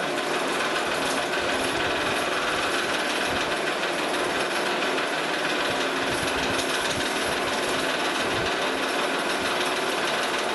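Electric DC motor of a converted chipper shredder running steadily, spinning the shredder rotor at about 1150 RPM on 12 volts during a first low-voltage battery test.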